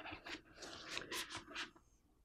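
A thin rolled styrene plastic sign rustling and scraping in the hands as it is lifted and handled: a quick series of faint, short scratchy rustles.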